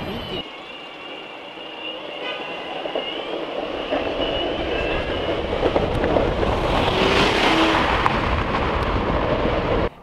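Boosted Board electric skateboard accelerating through city traffic: a high wavering motor whine over road and wind noise that builds, loudest about seven to eight seconds in.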